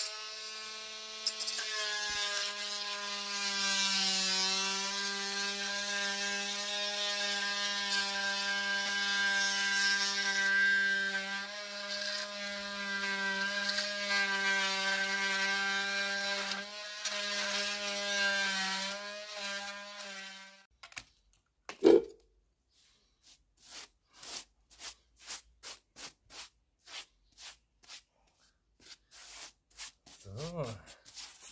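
Makita 18V cordless oscillating multi-tool cutting down the rim of an orange plastic drain pipe, a steady buzzing whine that runs for about twenty seconds and then stops. A single sharp knock follows, the loudest sound, then a run of short, evenly spaced strokes, about two a second.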